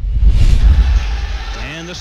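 TV broadcast graphics transition effect: a whoosh about half a second in over a loud, deep rumble that fades out. A man's commentary starts near the end.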